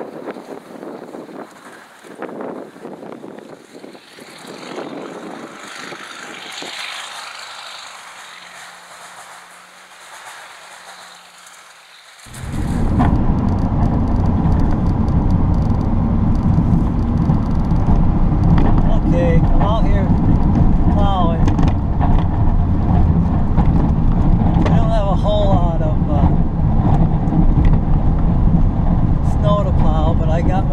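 Wind rushing across the microphone with a distant diesel pickup faint beneath it. About twelve seconds in, the sound switches abruptly to the loud, steady low drone of a Duramax LB7 6.6-litre V8 turbo-diesel, heard from inside the cab of a Chevrolet Silverado 3500 dually as it plows snow.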